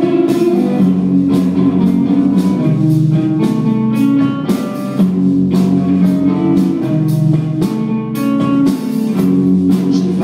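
Live rock band playing an instrumental passage: electric guitars and bass holding chords over a drum kit with regular cymbal and drum hits.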